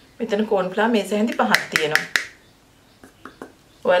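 Mostly speech. Several sharp clicks come about one and a half to two seconds in, and a few faint ticks follow in the pause after, from a spatula and hands mixing mushroom strips with corn flour in a glass bowl.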